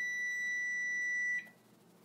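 One long, steady, high-pitched electronic beep that cuts off suddenly about one and a half seconds in.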